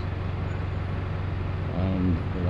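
Double-decker bus engine idling at a stop: a steady low hum.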